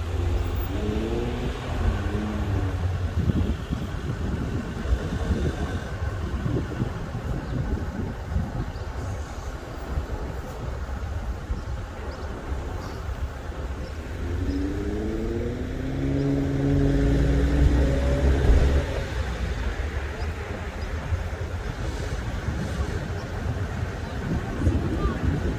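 Street traffic with wind rumbling on the microphone. A car engine rises in pitch as it accelerates past near the start, and another does so again about two-thirds of the way through, levelling off as it passes at its loudest.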